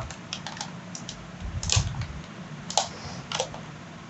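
Cardboard box and moulded plastic packaging handled as a bulb-shaped security camera is lifted out: a scatter of short clicks and rustles, the three loudest in the second half.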